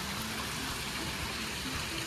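Pool wall waterfalls spilling in thin sheets from a tiled wall into the pool water, a steady splashing.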